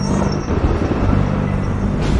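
Intro sound design: a low, steady drone over a rumbling wash of noise.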